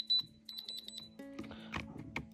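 Handheld Diamond Selector II diamond tester beeping: two quick runs of rapid, high-pitched beeps in the first second. The beeping is its diamond signal, given here on rough moissanite, which passes the tester. Soft background music plays underneath.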